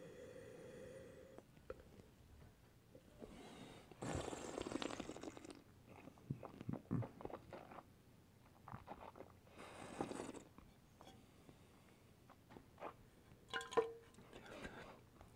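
Quiet mouth sounds of red wine being tasted: a short hum as it is sipped, then two noisy bursts of air drawn through the wine and swished in the mouth, about four and about ten seconds in. Near the end the wine is spat into a stainless steel spit cup.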